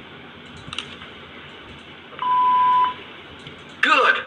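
A single steady censor bleep lasting a bit under a second, starting about two seconds in, blanking out a spoken word.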